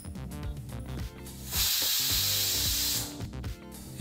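Pressure cooker whistling: steam hisses out under the weight valve in one burst of about a second and a half, starting about a second and a half in. This is the sign that the cooker has come up to pressure. Background music plays underneath.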